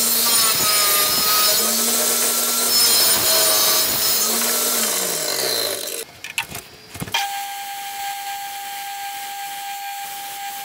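Table saw cutting through a knife's old wooden handle scales, loud for about six seconds, the motor's hum falling in pitch near the end. Then a belt grinder runs with a steady, quieter whine from about seven seconds in.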